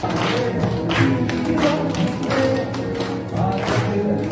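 A group of schoolchildren singing a song together while clapping along in a steady rhythm.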